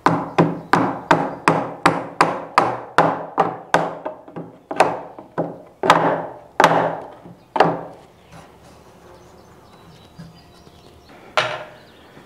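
Rubber mallet striking a wooden wedge against the edge of an old solid-wood door, driving the wedge tight to clamp the freshly glued joints. It is a quick, steady run of about eighteen blows that slows toward the end, then a pause and one more blow near the end.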